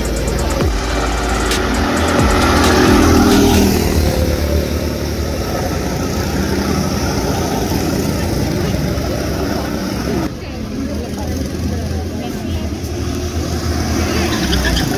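Small petrol engines of rental go-karts running on the track as karts drive past, louder about two to four seconds in as one goes by close.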